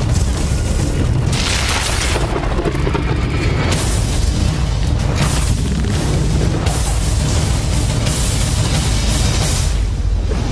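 Trailer music with a heavy, sustained low booming and several surges of noise every second or two.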